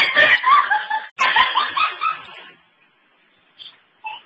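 A person laughing in two bursts, about two and a half seconds in all, then quiet.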